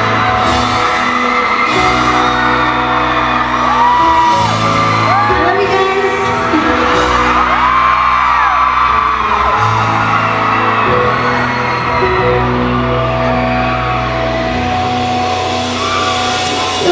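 Live pop song played loud over a concert PA, with held chords and a woman singing, recorded from inside the audience. Fans whoop and scream over the music.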